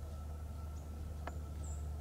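Quiet winter-woods field audio: a steady low rumble, with a few very faint, very high, short chirps scattered through it.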